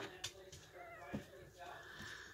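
One-week-old Shetland sheepdog puppies giving a few faint, short high-pitched squeaks as they sleep in a pile.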